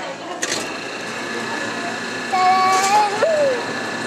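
Self-serve soft-serve ice cream machine dispensing: a clunk as the lever is pulled down about half a second in, then a steady whine from the machine as the soft serve is pushed out.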